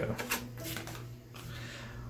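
Tarot cards being drawn from a deck and turned over onto a cloth-covered table: a few light clicks and slides of card stock, most of them in the first second.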